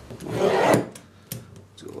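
A razor-blade knife scoring a sheet of Kydex plastic along a straight-edge ruler: one rasping scrape about half a second long near the start, followed by a few light clicks. The score line lets the sheet be snapped cleanly.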